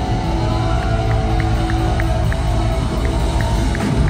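Live heavy-metal band music with long held electric guitar tones over a steady low drone, and light ticks about three times a second.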